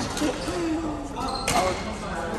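Badminton racket striking a shuttlecock: a light hit at the start and a sharp, loud smack about a second and a half in, echoing in a large hall, with a player's voice calling out between them.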